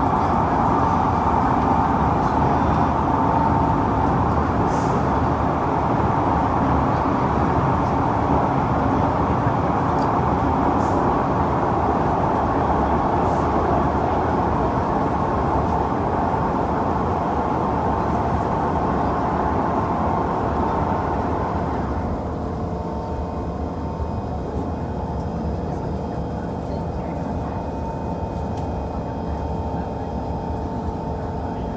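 Interior of a moving SMRT C151 metro train: a steady rumble of wheels on rail and running noise. About two-thirds of the way through, the noise eases and a steady whine of several pitches from the train's drive comes through.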